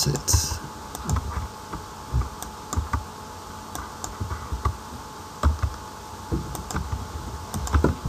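Computer keyboard keystrokes, sparse and irregularly spaced, as numbers are typed one at a time into form fields.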